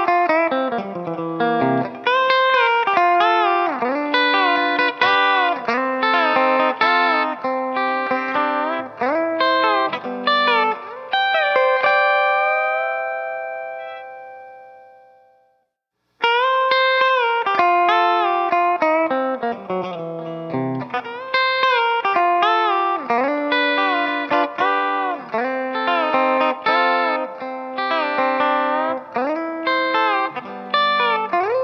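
Gibson Music City Jr. electric guitar with a B-bender playing a country/blues lick in C, picked single notes with the B string repeatedly bent up in smooth pitch rises by the bender. About halfway through the lick ends on a chord that rings out and dies away to silence, then the lick starts again.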